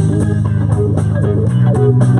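Live band playing: electric guitar and bass guitar over a drum kit with steady cymbal strikes. The bass moves to a lower note about one and a half seconds in.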